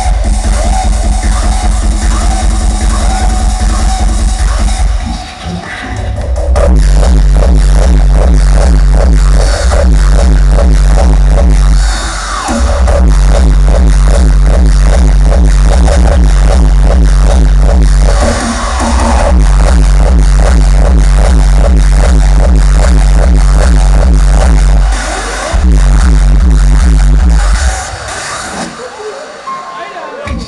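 Loud hardstyle dance music played live over an arena PA and heard from the crowd, driven by a heavy, steady kick drum. The kick drops out briefly every six seconds or so and falls away near the end.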